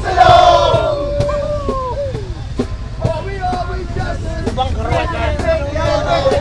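People's voices yelling and calling out in long, falling calls over a steady low rumble. The yelling is loudest in the first two seconds.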